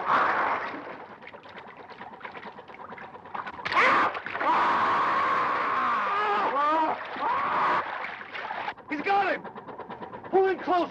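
Water splashing and churning as a shark attacks a man in the water. Loud yelling and screaming rises over the splashing from about four seconds in and lasts several seconds, with a further shout near the end.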